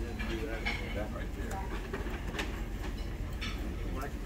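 Diner background noise: indistinct chatter of other people in the room over a steady low rumble, with a few sharp clicks.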